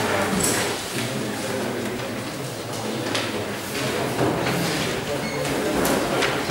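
Indistinct voices murmuring in a large lecture hall, with the scrape and tap of chalk on a blackboard.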